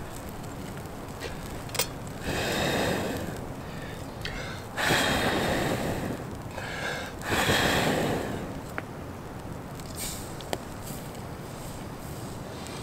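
A person blowing hard on campfire coals three times, each long breath lasting about a second, around two, five and seven seconds in, to get the fire hot under a fry pan.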